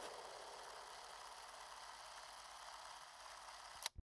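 Near silence: a faint steady hiss, ending in a short click as the audio cuts off.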